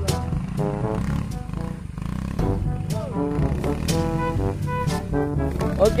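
A few short held musical notes over a steady low rumble from the Yamaha X-Ride scooter's engine running through grass, with occasional sharp clicks.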